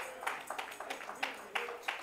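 Scattered, irregular hand claps from a church congregation, with faint murmured voices under them.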